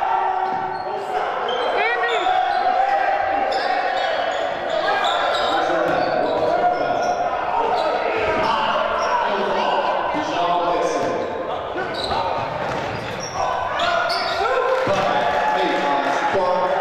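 Basketball game in a large gym: a ball dribbled on the hardwood court, with players' and coaches' shouts on and off throughout.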